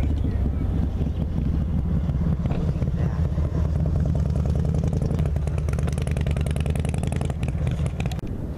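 An engine running steadily, with a rapid, even pulsing that is strongest in the second half.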